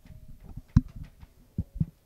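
Several short, dull, low thumps: the loudest a little under a second in, two more near the end.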